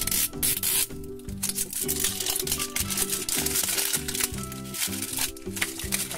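Plastic wrapper on a toy package torn open along its tear strip and crinkled off by hand, with irregular rustling and ripping noises, over steady background music.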